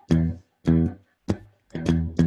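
Electric guitar playing a low single-note bass-line riff: about five short, separated picked notes with brief gaps between them.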